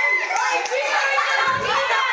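Schoolchildren's voices talking and calling out over one another, with some hand claps among them.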